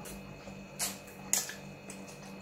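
Close-miked chewing and mouth sounds of a man eating pork tail, with two sharp wet clicks about a second in and again half a second later, over a steady low hum.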